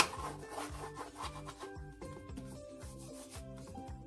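Background music with a steady repeating beat. Over it, a sharp knock right at the start, then about a second and a half of rubbing as hands work a soft cookie dough.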